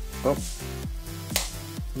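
Background music with a steady repeating rhythm, a brief spoken 'oh', and a single sharp plastic click about two-thirds of the way in as the macro lens clip snaps onto the GoPro housing.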